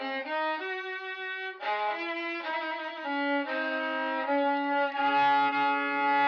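A freshly repaired violin bowed in a slow melody of held notes, with a brief break about a second and a half in. A deeper note sounds under the melody from about five seconds in.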